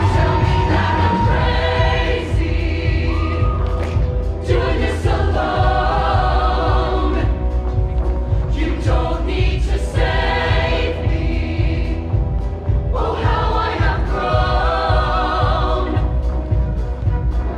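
Show choir singing together in full chorus over instrumental accompaniment with a steady beat.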